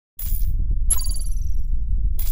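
Sound effects for an animated logo intro: a short high swish, then about a second in a bright metallic ding that rings and fades over about half a second, all over a steady deep bass drone that starts suddenly from silence.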